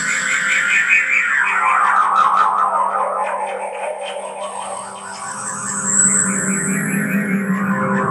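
Live electronic music from a keyboard synthesizer: a steady low drone under a fluttering, pulsing band of sound that sweeps down in pitch over the first few seconds and rises again near the end.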